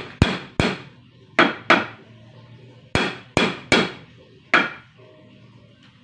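Hammer blows on a wooden wall frame during carpentry: eight sharp strikes in uneven groups of two or three, each ringing briefly, stopping about five seconds in.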